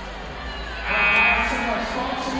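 A loud, drawn-out shout from a voice, starting about a second in and tailing off after about half a second, over the steady background noise of a gym.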